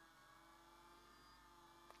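Near silence with a faint steady hum and a tiny click near the end.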